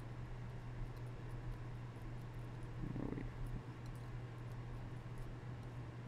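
Steady low hum of room tone with faint soft scraping of a steel palette knife mixing oil paint on a paper palette, and a brief soft sound about halfway.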